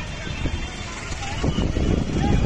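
Low, rough rumble of street noise with people's voices around a burning car.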